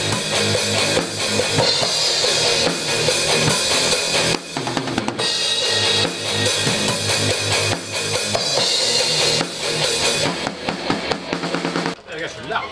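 Acoustic drum kit with Paiste cymbals being played: bass drum, snare and cymbals in a rock beat, with a brief break about four and a half seconds in.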